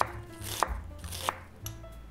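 Chef's knife mincing onion on a wooden cutting board: three crisp chops about two-thirds of a second apart, the blade knocking on the wood.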